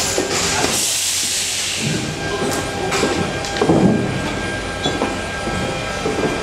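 Steady machinery hum in a large metal aircraft cargo hold, with a rush of hissing air for about two seconds near the start and scattered knocks and footsteps.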